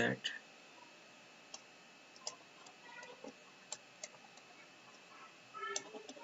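Faint, irregular clicks and taps of a stylus on a tablet screen during handwriting, over a faint steady high whine.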